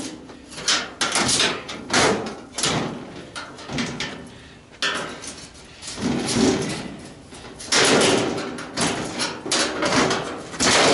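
Irregular knocks and bangs on a clothes dryer's sheet-metal cabinet as its top panel is struck and worked loose, some hits leaving a short metallic ring.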